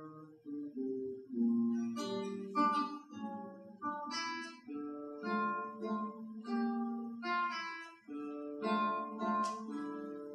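Solo classical guitar playing a plucked melody over bass notes, broken several times by strummed chords.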